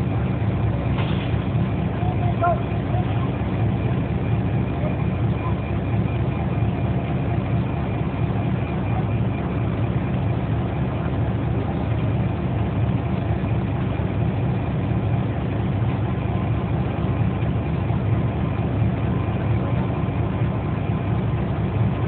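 A steady low mechanical rumble, like an idling engine or running machinery, holding an even level throughout.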